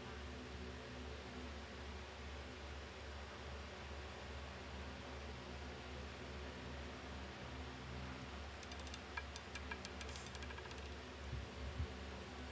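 Faint steady low hum, then, about nine seconds in, a run of light rapid clicks as a roulette ball clatters over the wheel's deflectors and pockets while it slows, with a few duller knocks near the end as it settles.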